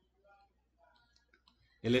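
Faint scattered clicks and taps of a stylus on a tablet screen during handwriting, at a very low level, then a voice starts speaking near the end.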